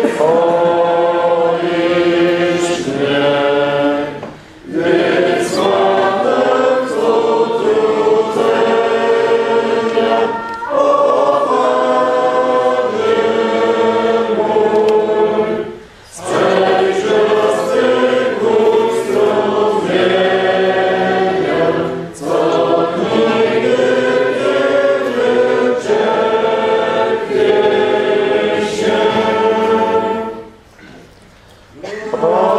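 A group of voices singing a hymn together in long held phrases, with brief pauses between phrases about 4, 16 and 22 seconds in.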